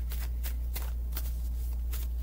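A deck of tarot cards being shuffled by hand: a run of quick, soft papery clicks, several a second, over a steady low hum.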